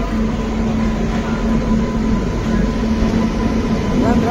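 WAP-7 electric locomotive hauling an express train slowly into a station platform: a steady hum over the rumble of the train rolling on the rails.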